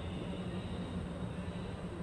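Anar fountain firework burning, its spray of sparks giving a steady, unbroken hiss.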